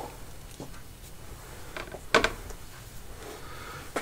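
A few small clicks and taps of objects being handled, with one sharper knock about two seconds in.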